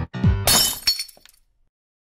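Background music with a thudding bass beat breaks off, and about half a second in a teacup smashes, a sharp crash that rings out for under a second.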